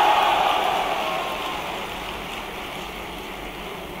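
A large audience clapping, the applause dying away gradually over a few seconds.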